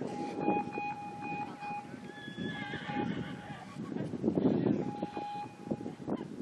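Hoofbeats of a cantering show jumper on a grass arena under general outdoor noise. A steady high tone runs for about three and a half seconds, stops, then sounds again briefly near the end.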